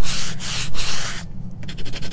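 Sandpaper rubbed back and forth along the edges of a painted 2x4 wood block, wearing through the paint to distress it. Long strokes about three a second, then after a brief pause quicker, shorter strokes.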